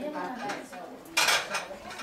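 Dishes and cutlery clattering, with one loud, short clatter a little past the middle, under low voices talking.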